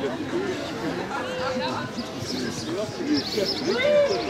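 Voices talking: a man's speech over the chatter of an audience.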